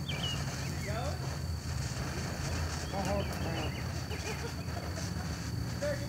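Birds chirping over a steady low rumble, with a man laughing about three seconds in; no blast.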